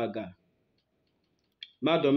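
A man's voice talking, with a pause of about a second in the middle; a short click comes just before he starts speaking again.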